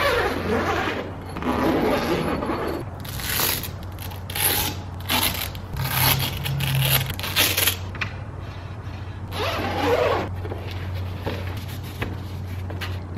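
Zipper of a padded soft rifle case pulled open in a series of short strokes, followed by fabric and gear scraping and rustling as the case is laid open and the air rifle lifted out.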